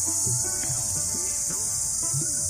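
Steady, high-pitched chorus of insects, crickets or cicadas, filling the orchard, with low rising-and-falling tones repeating about twice a second beneath it.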